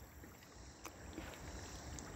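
Faint outdoor ambience: a low wind rumble on the microphone under a steady, high insect drone, with one faint click about a second in.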